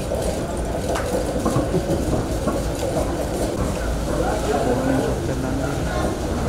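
Wheeled metal trolley loaded with crates of king coconuts rolling along with a steady low rumble, a single click about a second in, under people's voices.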